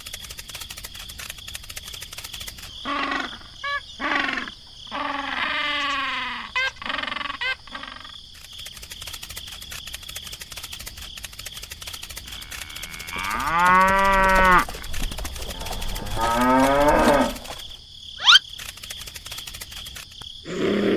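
Cows mooing several times, with one long moo a little past the middle, over a steady high-pitched chirping background; a short rising whistle near the end.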